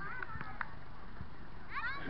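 Children's high-pitched shouts and calls carrying across a playing field, with a burst of several sweeping calls near the end.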